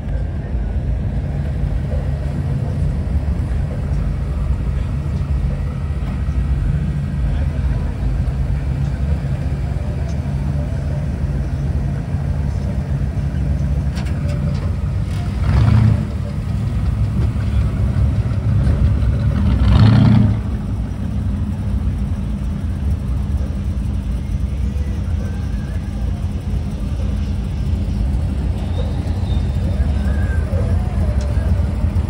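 Classic lowrider cars' engines running as the cars roll slowly past, a steady low rumble throughout. Two brief louder surges come about halfway through and about two-thirds of the way in.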